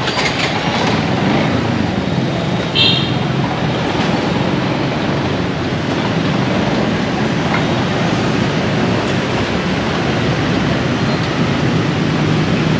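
Steady noise of busy street traffic, thick with motorbikes passing close by, with a brief high-pitched note about three seconds in.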